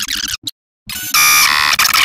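Chopped, stuttering edited audio that cuts in and out with abrupt silent gaps. About a second in it gives way to a loud, harsh buzzing tone that changes pitch once.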